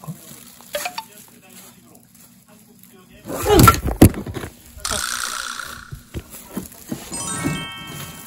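Edited-in sound effects over a title card. A loud short sound with a bending pitch comes about three and a half seconds in, then a second of hiss-like noise, and near the end a quick run of chime-like tones stepping in pitch.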